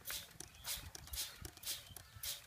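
Footsteps crunching on dry ground, about two steps a second, each with a dull thud.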